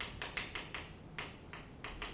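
Chalk writing on a chalkboard: an irregular run of quick, sharp taps as the letters are made.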